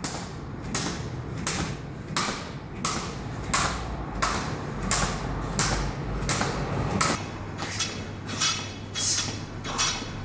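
Skipping rope slapping a rubber gym mat with each jump, a steady rhythm of about three slaps every two seconds. About seven seconds in, the rhythm changes to quicker strokes, about two a second, with a rattle.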